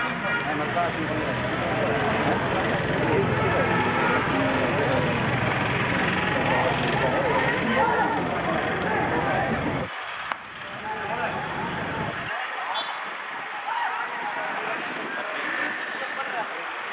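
Indistinct chatter of spectators and players at an open-air cricket ground, over a low rumble that cuts off suddenly about ten seconds in.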